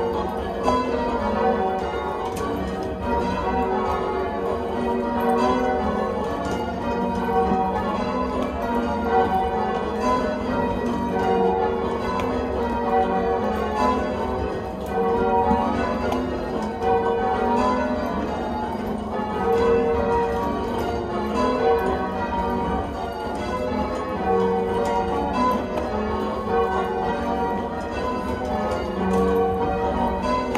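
Church tower bells being rung full-circle in change ringing: an unbroken, evenly paced stream of bell strikes, the bells sounding one after another in changing order, heard from the ringing chamber below the bells.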